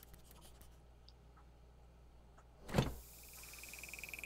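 Cartoon refrigerator door swinging open: a single sudden thump about three quarters of the way in, after a quiet stretch with a few faint ticks. A steady high tone with a fast pulsing starts right after it.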